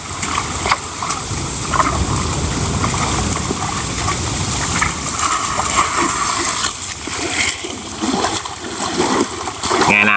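A woven basket of freshly caught fish being swished and dunked in shallow pond water to rinse it: continuous splashing and sloshing.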